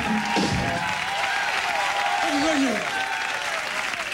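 Audience applauding and cheering just after the band's last chord stops, with yells rising and falling over the clapping.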